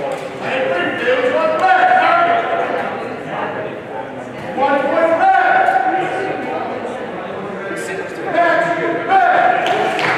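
Several people talking indistinctly in a large, echoing hall, the voices rising louder three times.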